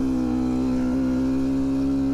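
GPX Moto TSE250R's 250 cc single-cylinder engine running under steady throttle while the bike is ridden, its note holding even with a slight rise in pitch about a second in.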